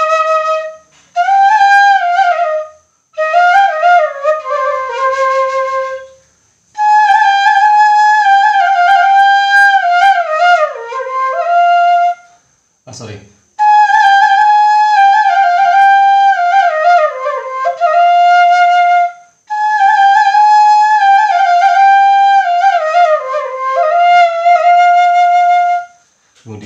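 Transverse bamboo suling pitched in A# playing a dangdut melody in phrases, with short breaks for breath between them. Notes bend and slide downward at the ends of phrases.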